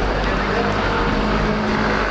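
Steady low rumble of outdoor background noise with a faint steady hum.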